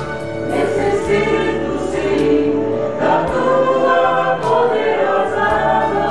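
A mixed vocal ensemble of men and women singing a Portuguese-language gospel song in harmony, holding long notes over a low bass accompaniment. The chord shifts about halfway through.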